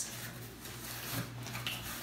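Cardboard box being handled and its flaps opened: a few faint, short rustles and scrapes of cardboard over a steady low hum.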